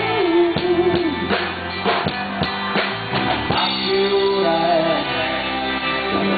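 Live rock band playing through the PA: drum kit, electric guitars and a man singing into the microphone. The drum hits come about two or three a second in the first half, then drop back, leaving the guitars and voice.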